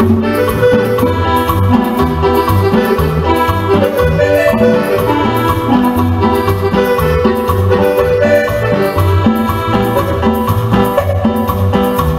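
Live band playing an instrumental passage of a Latin dance tune: congas, a bass line and a sustained melody instrument over a steady, even beat.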